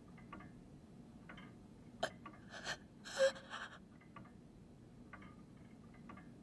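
Faint grandfather clock ticking about once a second, with a short breathy gasp about two to three and a half seconds in.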